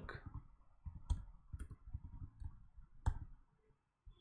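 A few separate sharp clicks from a computer keyboard and mouse, the two loudest about a second in and about three seconds in, as a command is entered and the page is refreshed.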